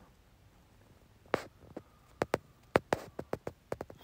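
About a dozen light, sharp taps at irregular spacing, starting about a second in: fingertips tapping on a phone's touchscreen.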